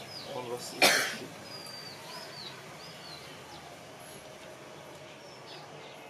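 A single short cough about a second in, then a quiet pause with a few faint, high bird chirps in the background.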